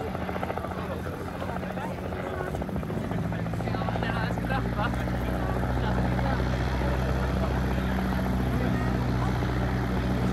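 Bell UH-1D Huey helicopter running on the ground: its Lycoming T53 turboshaft and two-blade main rotor make a choppy low rumble. About three seconds in, this gives way to a steady drone that grows louder.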